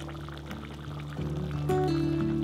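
Background music of held low notes that shift pitch a little after a second in.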